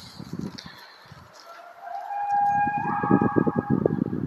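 A long, drawn-out animal-like cry, held on one pitch and then stepping up higher partway through, over a rough low rumbling. It sounds like a large animal calling, but its source is unidentified.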